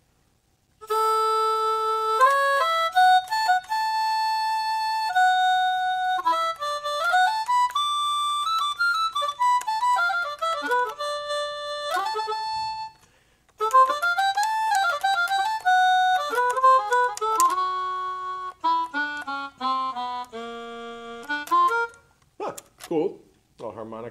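Yamaha YDS-150 digital saxophone played on its C01 preset, one of its non-saxophone instrument voices. It plays a melody of held notes and quick runs in two phrases with a short break near the middle, the second phrase ending on low notes.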